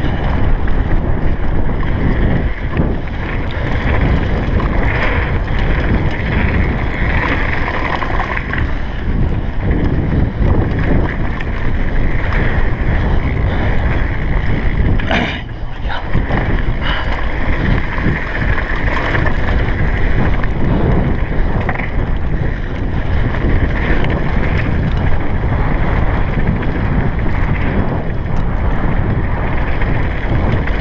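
Wind buffeting a GoPro Hero3's microphone while a Commencal Supreme downhill mountain bike rattles and its tyres rumble over a rocky gravel trail at speed. The noise is steady, with a short lull about halfway through.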